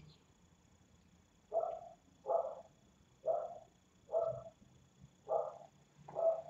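A dog barking, five short barks spaced about a second apart, starting about a second and a half in.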